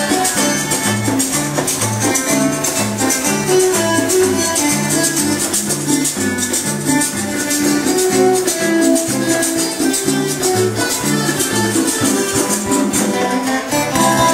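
Rondalla music: plucked string instruments playing a melody over a moving bass line, with a shaker keeping a steady beat.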